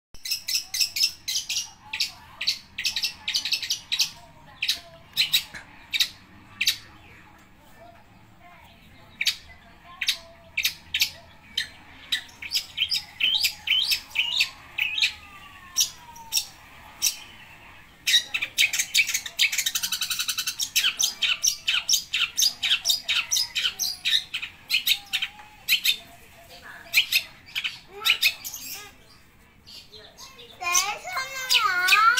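Caged long-tailed shrike (cendet) singing hard, a song packed with imitated calls: runs of short, sharp, high notes in quick succession. It eases off for a moment about a third of the way in, then breaks into a fast unbroken chatter past the middle.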